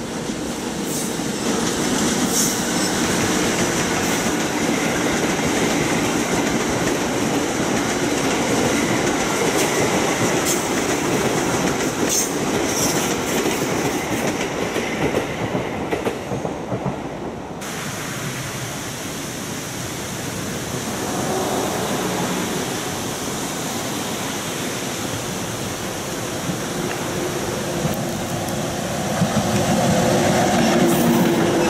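EF64 electric locomotive hauling a long rake of unpowered 205-series commuter cars past on curved track: steady rumble of steel wheels on rail with clicks over rail joints and a few brief high squeals. The noise drops after about seventeen seconds and builds again near the end as the train approaches once more.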